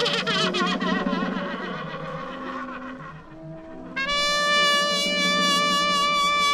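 Ensemble of lip-reed instruments, horns and trumpets, playing overlapping held notes. A wavering note fades over the first three seconds, then about four seconds in a bright, steady held note enters suddenly and loudly over lower sustained tones.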